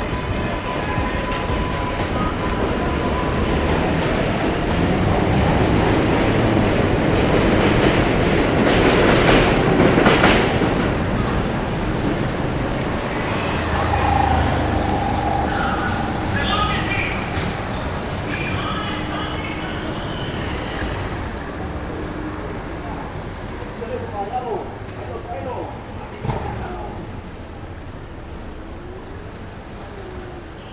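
A subway train passing on the elevated steel track overhead, swelling to its loudest about eight to ten seconds in and then fading, over steady street traffic.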